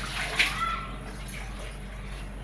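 String mop being dunked and sloshed in a plastic bucket of water, loudest about half a second in.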